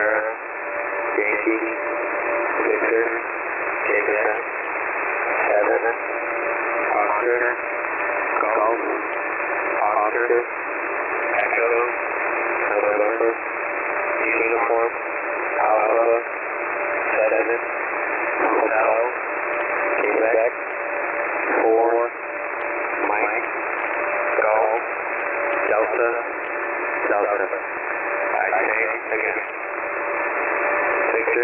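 Shortwave single-sideband radio reception of an HFGCS frequency (11175 kHz), thin and band-limited under a steady hiss, with a faint voice speaking one word about every second and a half, the pace of a phonetic-alphabet message read-out. A steady low whistle from a carrier or heterodyne runs under it.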